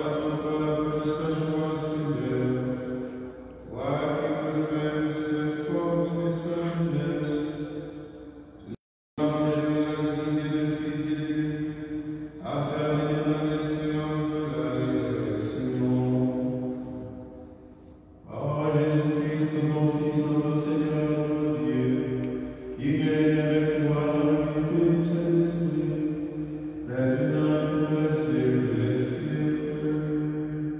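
A priest's solo voice chanting a liturgical prayer into a microphone, on held sung notes in phrases of a few seconds with short breaths between them. The sound cuts out completely for a moment about nine seconds in.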